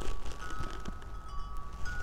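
Wind chime ringing in gusty wind: a few high notes, each held and overlapping the next, over a low rush of wind.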